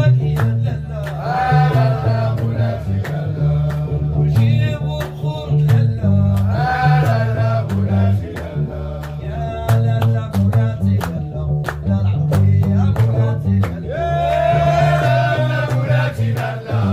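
Gnawa music: a guembri (three-string bass lute) plucking a repeating low bass riff, with steady rhythmic hand claps and a man singing phrases over it.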